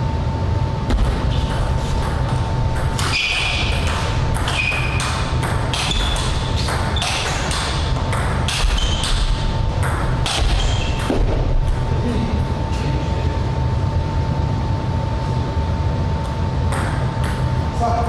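Table tennis ball striking paddles and the table in a rally: quick sharp clicks, each with a short high ping, for about ten seconds, then a pause and a few more clicks near the end. A steady low hum runs underneath.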